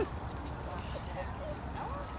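Faint sounds of small dogs at play on open ground, after their yipping breaks off, with a woman's voice briefly at the start.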